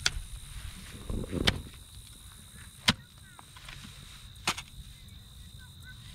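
Hoe blade chopping into soil, four sharp strikes about a second and a half apart.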